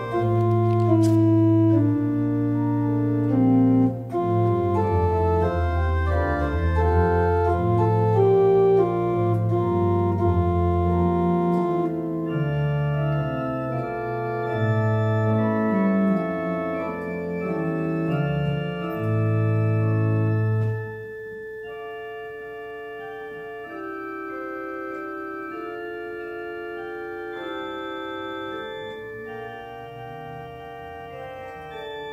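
Church organ playing a slow prelude of sustained chords, with deep pedal bass notes under the first two-thirds. About 21 seconds in, the pedal bass drops out and it carries on more softly on the manuals alone.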